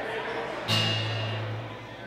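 A chord strummed once on an acoustic guitar, starting sharply just under a second in and ringing for about a second as it fades.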